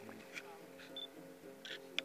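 A camera taking a picture: a short high beep about halfway, then a few sharp shutter clicks, the loudest at the very end. Soft background music plays under it.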